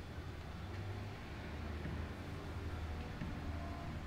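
Quiet, steady low rumble of background noise.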